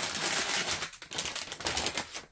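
Plastic packaging bag crinkling and rustling as coiled LED light strips are pulled out of it: a fast run of small crackles with a brief lull about a second in.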